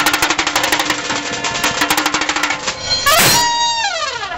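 Marching drum band playing a fast snare-drum pattern. A loud crash comes about three seconds in, and a sliding, falling tone follows near the end.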